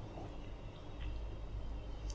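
Quiet room tone: a low steady hum with faint background hiss and a single faint tick about a second in.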